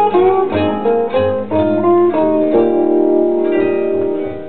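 A blues guitar instrumental fill played back from a vinyl record: a run of single plucked notes between sung lines, settling into a held chord about halfway through.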